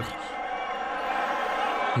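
Steady din of a large arena crowd, a mass of voices with no single voice standing out, growing slightly louder.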